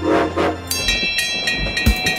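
Cartoon steam train sound effect: two short whistle toots, then chugging, with a bright jingle of children's music coming in about a second in.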